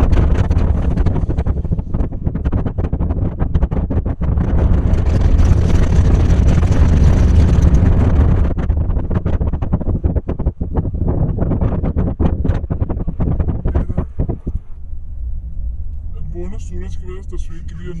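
A car driving along a road, recorded from inside: a loud, steady low rumble of tyres and engine with rushing air, loudest in the first half. A string of short thumps follows, then it quietens, with a voice starting near the end.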